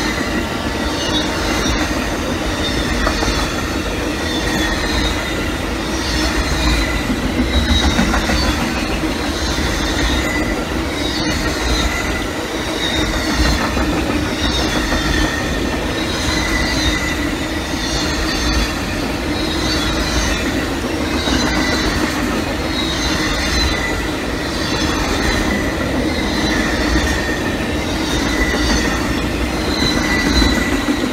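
Amtrak Auto Train's bilevel passenger cars and enclosed autorack cars rolling past at speed, a steady rumble of steel wheels on rail with a high whine running over it.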